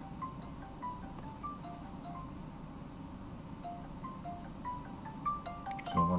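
A smartphone's ringback while an outgoing call waits to be answered: a chiming melody of short notes, about three a second. A few clicks and a thump from handling the phone near the end.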